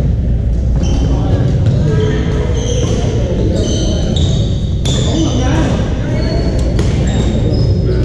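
Badminton rally sounds in a large gym hall: shuttlecocks struck by rackets in several sharp hits, with short high squeaks of shoes on the hardwood court, over the babble of players on the neighbouring courts.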